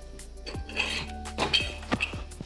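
A few sharp metal knocks and a scrape as a small wheel attachment is worked out from under a steel portable car-lift base, over quiet background music.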